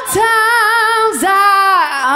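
A female lead vocalist singing unaccompanied, holding long notes with vibrato and breaking briefly about a second in.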